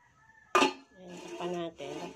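A stainless-steel pot lid with a glass centre set down on a stainless wok, landing with one sharp metal clank about half a second in.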